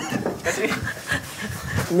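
Breathy, muffled laughter and panting from a few men, with short low vocal sounds and no clear words.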